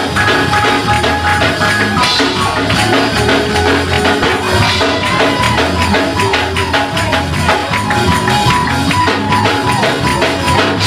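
Gospel praise-break music with a fast, steady beat and tambourine, slowed down in a chopped-and-screwed remix.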